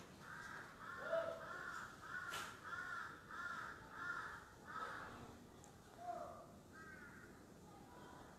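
A bird calling faintly, about eight short calls in a steady run of roughly two a second, then a few weaker calls near the end.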